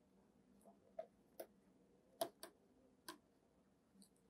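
Near silence broken by about five faint, sharp clicks, spaced unevenly: a stylus tapping on a tablet screen as handwriting is added.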